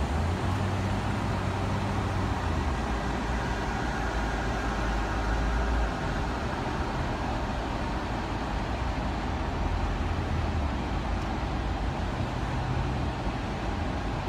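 Steady low engine and road rumble heard from inside a car's cabin as it creeps along in slow traffic, heavier in the first half.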